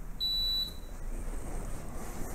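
Dunlop swingweight machine giving one steady high-pitched electronic beep of about half a second, a little after the start, as it measures the swingweight of a tennis racket swinging in it.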